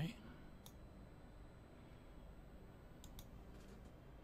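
A few faint computer mouse clicks over quiet room tone: one about two-thirds of a second in and a small cluster around three seconds in.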